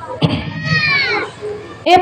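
A child's voice calling out once, a drawn-out cry of about a second that falls in pitch, over faint crowd noise.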